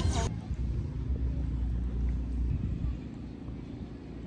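A voice over a loud outdoor mix is cut off abruptly just after the start. After that comes a steady low outdoor rumble with no voices or music.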